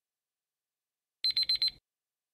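Countdown timer alarm sound effect: a short burst of rapid high electronic beeps, like a digital alarm clock, about half a second long, signalling that time is up.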